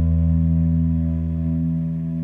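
Background music: a sustained chord held and slowly fading.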